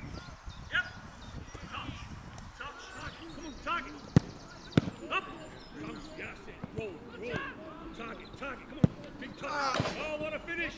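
Football being kicked during a goalkeeping drill: three sharp thuds, about four, five and nine seconds in, over scattered distant shouts from players.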